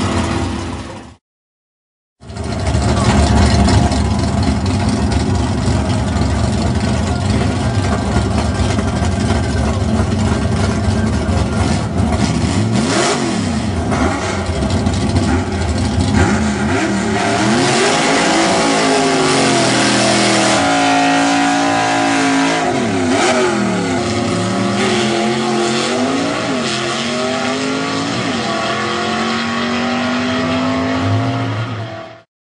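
Drag-racing '40 Willys gasser's engine running loud at the strip. The sound drops out for about a second near the start. From about the middle on, the engine is revved over and over, its pitch sweeping up and down.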